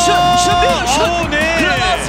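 A football commentator's long, drawn-out excited cry at a goalmouth chance: one high held note, then a second wavering cry, over a music bed.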